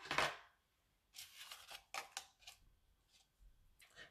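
A soft rustle, then about five short crisp clicks and snips over a second and a half, from a rhinestone strip sheet and scissors being handled on a tabletop.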